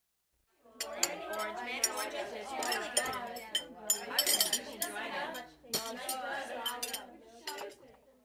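Dishes and cutlery clinking and clattering in a busy run of sharp clinks, a recorded household sound effect.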